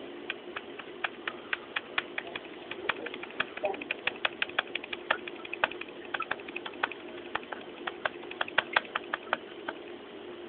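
Casio fx-350MS calculator key pressed rapidly over and over, a quick irregular run of small plastic clicks about three to five a second, each press adding one to the count shown on the display.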